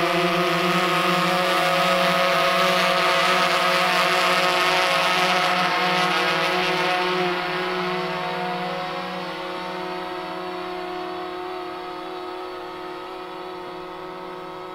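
Quadcopter drone's propellers and motors giving a steady buzzing hum, which fades gradually after about seven seconds as the drone moves away.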